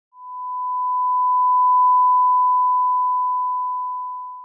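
Bars-and-tone test signal: the thousand-cycle reference tone that goes with television colour bars, one steady pure beep. It grows louder to a peak about two seconds in, then slowly fades.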